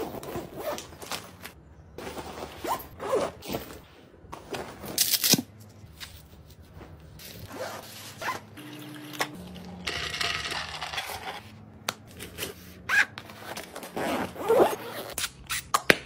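Household items and packaging being handled and put away: a run of short rustles, scrapes and clicks, with a longer zipping or scraping sound about ten seconds in.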